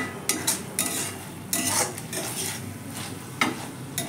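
A spatula stirring and scraping flat beans in a thick spice paste around a metal kadai, in repeated short scrapes, with a light sizzle of frying underneath.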